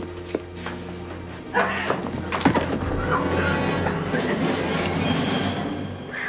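Film score with low sustained notes, cut through by a few sudden thuds and sharp hits, the loudest about two and a half seconds in.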